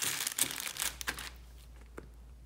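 Plastic packaging crinkling and rustling as it is handled, stopping a little over a second in.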